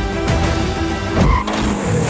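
Film trailer music with a car sound effect: a loud low hit and car tyres squealing briefly just past a second in.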